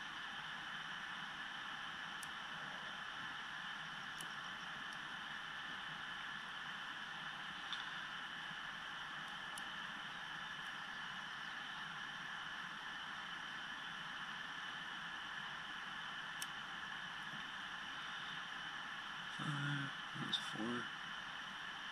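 A few faint, scattered clicks from a lock pick and tension wrench working the pin stack of a Yale Y90S/45 padlock, over a steady hiss. There is a short voice-like sound near the end.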